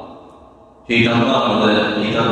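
A man's voice: a short pause, then about a second in he carries on in a drawn-out, even-pitched, chant-like tone.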